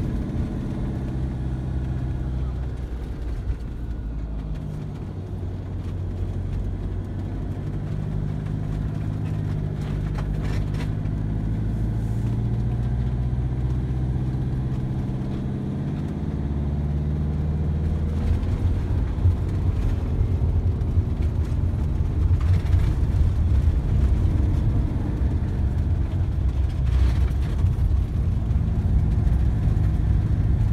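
Van engine and tyre noise heard from inside the cab on a single-track road. The engine note rises and falls with throttle and gear changes. From a little past halfway the low rumble grows louder and rougher as the tyres run onto a coarse, patched surface.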